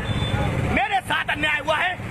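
A man speaking over a steady low rumble of road traffic.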